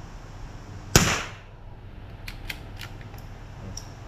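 A single rifle shot about a second in, sharp and loud with a short ringing tail. A few faint light clicks follow over the next two seconds.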